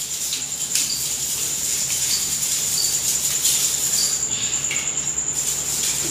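A steady high-pitched insect trill, with short high chirps repeating about once a second. Faint rubbing and clicks come from the metal window grille being wiped.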